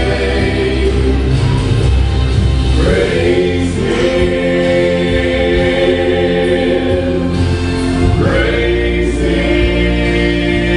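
Male gospel vocal trio singing in close harmony through microphones and a PA, holding long chords over a recorded accompaniment with a strong bass, sliding up into new held notes twice.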